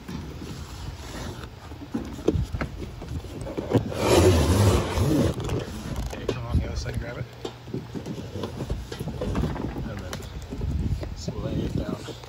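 Handling noise from a long cardboard shipping box being freed and moved: scattered knocks, clicks and scrapes, with a louder rustling scrape about four to five seconds in.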